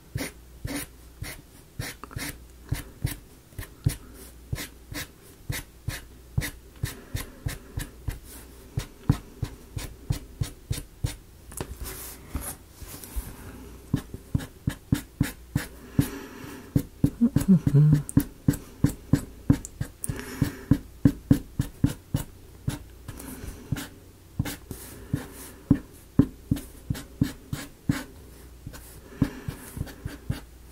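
Sharpie marker tapping and stroking on a thin wooden model piece while colouring in a small design: a steady series of short, sharp ticks, about two or three a second.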